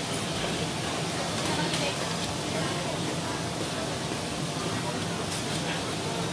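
Busy restaurant background: a steady hum under the indistinct murmur of other diners' voices, with a few faint clinks of tableware.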